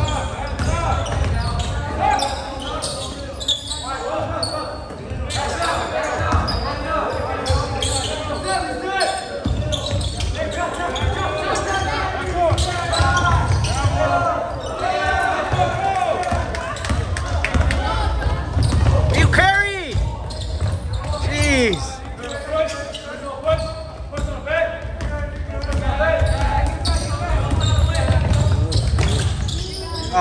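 Basketball game sounds in a large gym: a basketball bouncing on the hardwood court among indistinct voices of players and spectators. Two short, sharp squeaks a little past the middle, typical of sneakers on the court floor.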